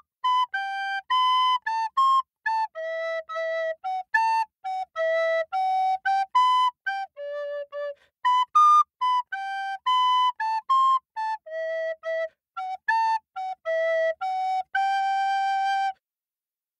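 A solo flute playing a tune of short, separate notes with small gaps between them, ending on a longer held note.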